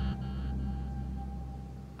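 Background music: a sustained low drone with a thin high held note, slowly fading.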